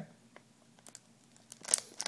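Plastic booster-pack bag crinkling in the hands, faint at first, then a short, louder crinkle near the end.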